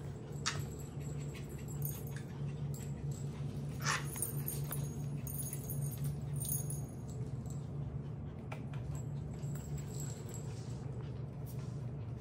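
Puppies playing with toys on a bare floor: a few short clicks and rattles and occasional brief puppy whimpers over a steady low hum.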